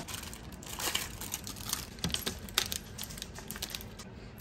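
Plastic candy wrappers crinkling as hands handle them, with irregular crackles and clicks.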